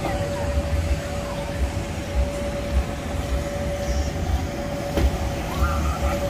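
Outdoor night-time ambience: an uneven low rumble with a steady hum, faint voices in the distance near the end, and a sharp click about five seconds in.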